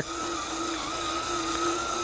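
RC Zetros 6x6 truck's electric drive motor and gearbox whining steadily as it hauls a lowboy trailer loaded with a dozer.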